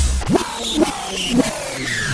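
Electronic dance track in a DJ mix, caught in a looped section, with short rising pitch sweeps repeating about every half second.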